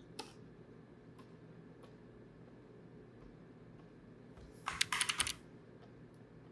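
Computer keyboard keys clicking as a shortcut is typed: a single click just after the start, then a quick flurry of about six key presses near the end, ending in Command-U.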